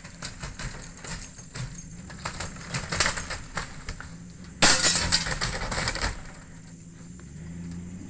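An old wooden house being pulled on by a chain: a string of cracks and snaps, then a louder crash of breaking lasting over a second about halfway through, with a vehicle engine running underneath.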